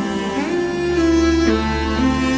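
Korg Pa5x arranger keyboard's 'Nat. Cello' sampled cello voice playing a slow melody in long held notes, sliding in pitch into a new note about half a second in and changing note again near the end.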